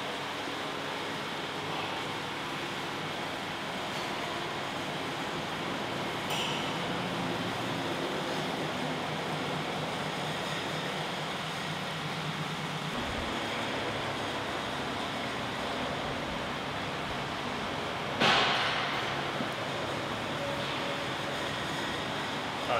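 Steady rushing background noise with a low hum under it that stops about thirteen seconds in, and one sudden loud noise about eighteen seconds in.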